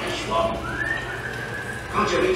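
Dark-ride show soundtrack: brief animatronic pirate voices, then one long whistled note that rises, holds and sags slightly.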